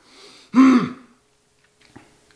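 A man's single short, throaty vocal sound about half a second in, like a throat clear or grunt, falling in pitch, followed by near silence.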